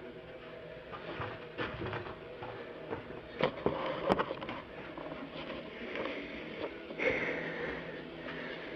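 Handling noise from a handheld camera being picked up and carried: faint rustling, two sharp clicks or knocks about halfway through, and a louder rustling hiss near the end.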